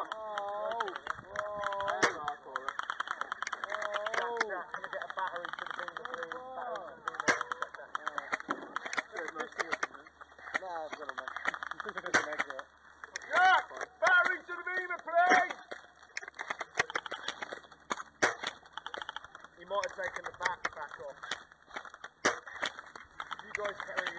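Airsoft guns firing during a skirmish: strings of rapid shots and separate single shots, heard as sharp clicks, with shouting voices in between.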